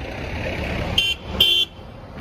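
Car horn honking twice in quick succession, two short beeps with the second slightly longer, over the low rumble of an approaching car.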